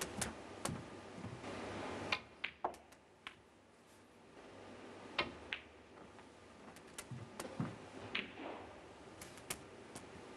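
Snooker balls clicking: the cue tip striking the cue ball and balls knocking together as shots are played, a scattered series of sharp clicks over soft room noise.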